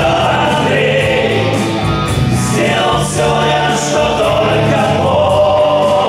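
A live rock band plays electric guitars, bass and keyboard while several male voices sing together in harmony.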